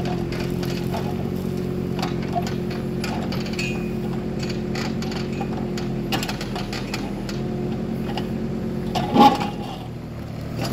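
Kubota micro excavator's small diesel engine running steadily as the arm digs and dumps soil, with scattered light clicks of stones and gravel. A short, louder burst of sound near the end.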